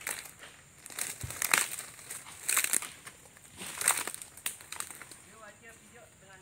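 Dry cut oil palm fronds crackling and crunching in irregular bursts as they are trodden and dragged over by a water buffalo hauling a wooden cart of palm fruit bunches. Near the end comes a short wavering call from a person's voice.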